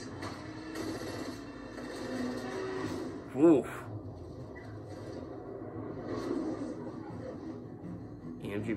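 Movie trailer soundtrack playing through a television's speakers into the room: low music and effects, with one short, loud tone that rises and falls about three and a half seconds in.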